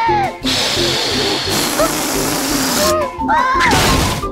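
Animated cartoon soundtrack: background music under a cartoon bunny's wordless rising-and-falling vocal cries, with a long hissing whoosh effect from about half a second in to about three seconds in.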